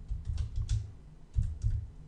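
Computer keyboard keystrokes: a short run of quick key clicks in two bursts as a sentence is typed.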